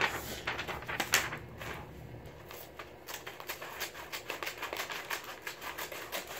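Scissors cutting through a sheet of paper: an uneven run of quick, crisp snips and paper rustle, with one sharper snip about a second in.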